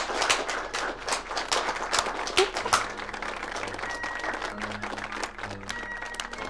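A roomful of guests applauding, dense clapping for about three seconds that then thins out, with soft background music underneath.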